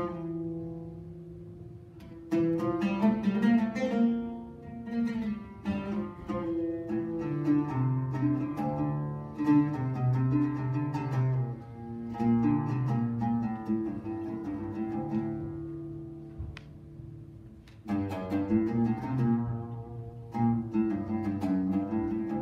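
Solo oud plucked in an unaccompanied melody, played in phrases with short pauses where the last notes ring and fade.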